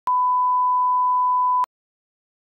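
A 1 kHz test-card reference tone, the steady beep that goes with TV colour bars. It is held for about a second and a half, then cuts off abruptly.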